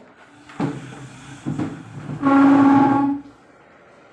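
A horn sounds one steady note for about a second, the loudest sound here. Just before it there is low rumbling with a few knocks.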